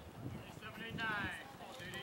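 A person's shouted, drawn-out call, falling in pitch, about half a second to a second and a half in, over faint outdoor background noise.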